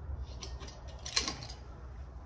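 A handful of light clicks and rattles of small parts as a replacement throttle tube and cable are handled and worked onto a dirt bike's handlebar, the loudest a little past the middle, over a faint steady low hum.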